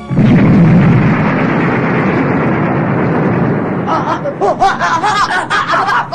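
A loud explosion-like sound effect in a radio-style drama: a sudden blast that rumbles on for about four seconds. Near the end, several voices start crying out in quick, rising-and-falling shrieks.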